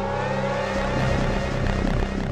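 Psy-trance track: a synthesizer sweep rising slowly in pitch over a steady, sustained bass tone and a wash of noise, with no kick drum.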